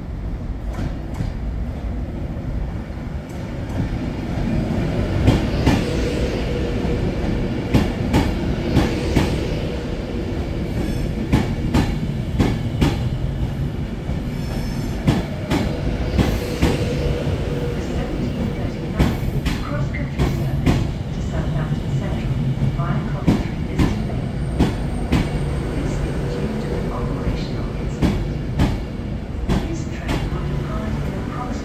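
Class 390 Pendolino electric train arriving and running along the platform: a steady low rumble with wheels clicking over rail joints, and a thin whine that comes and goes.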